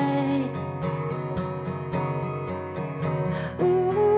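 A woman singing to her own acoustic guitar: she holds a note that fades out about half a second in, the guitar plays on alone with a steady pulse, and the singing comes back in near the end.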